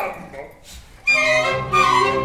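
A male opera singer, a baritone, singing with orchestral accompaniment. After a short lull the voice and orchestra come in loudly about a second in.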